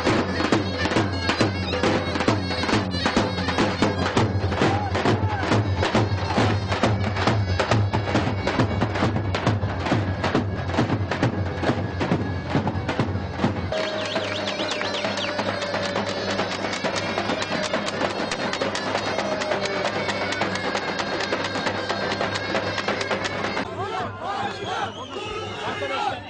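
Davul bass drum and zurna playing loud folk dance music, the drum keeping a steady beat under a continuous, piercing reed melody. About fourteen seconds in, the drum's deep beat falls away, leaving the reed line over lighter beats.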